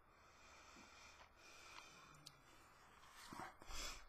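Near silence, then near the end a short breath out and a soft knock, as a person tasting whiskey sets a glass down on the table.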